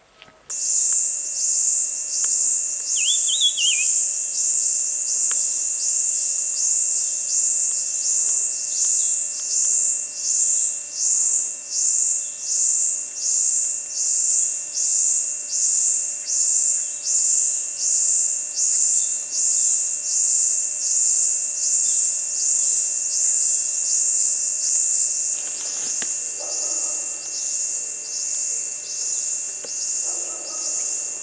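Loud, high-pitched insect song pulsing about one and a half times a second without a break. A short warbling bird call comes about three seconds in.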